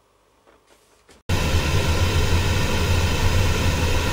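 A few faint handling knocks, then about a second in loud television static cuts in abruptly: a steady hiss with a low buzz under it.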